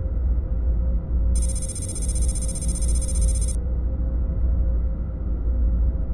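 Outro sound design for a logo reveal: a steady low synthesizer drone with a held tone, joined from about a second and a half in by a bright, high bell-like shimmer that stops abruptly about two seconds later.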